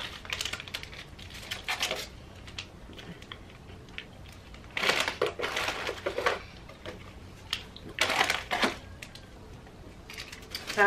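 Plastic snack wrappers crinkling in three short rustling spells as the packaging is handled and the bagged snacks in the box are rummaged through.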